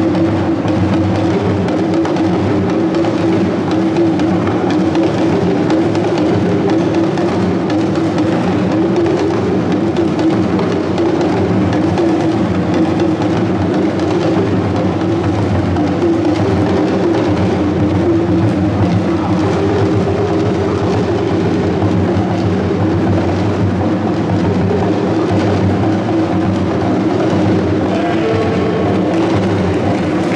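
Traditional drum ensemble playing shoulder-slung hand drums in a continuous dance rhythm, loud and unbroken.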